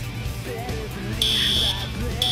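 Fire alarm sounding: a single high-pitched electronic beep, about half a second long, starting a little over a second in.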